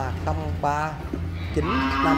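A head of cattle mooing: one long call at a steady pitch that starts near the end and carries on past it, after a few words of a man's speech.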